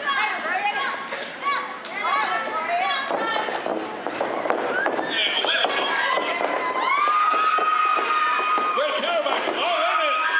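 Small crowd of spectators shouting and calling out at a wrestling match, with several voices overlapping. One voice holds a long steady call from about seven seconds in.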